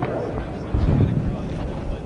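Indistinct background voices over steady room noise, with a louder low rumble about a second in.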